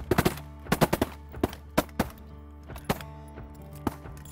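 A volley of shotgun blasts from several hunters: about a dozen sharp shots, packed close together in the first second, then more spread out over the next three seconds.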